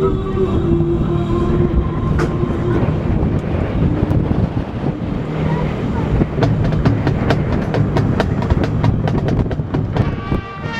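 Marching band playing outdoors. Held brass chords fade out in the first second or two, giving way to a heavy low rumble with many sharp percussion strokes that thicken in the second half, as the brass comes back in at the very end.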